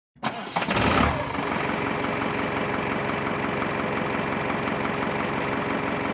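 An engine starts and swells briefly, then settles into a steady, even idle from about a second in.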